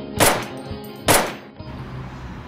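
Two pistol gunshots about a second apart, each sharp with a short fading tail, over background music.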